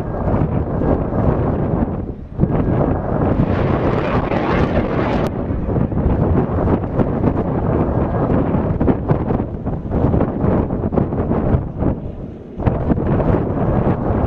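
THAAD interceptor's solid-fuel rocket motor rumbling and crackling as the missile climbs after launch. The noise briefly dips about two seconds in and again near the end.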